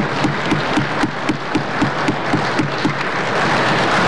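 Applause in the legislative chamber after a guest in the gallery is recognised, with an even beat of about four claps a second.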